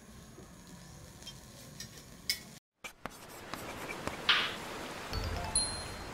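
Edited intro soundtrack with quiet music: a few faint clinks, a brief cut to silence, then a steady noisy wash with a short bright whoosh about four seconds in and a low thump just after.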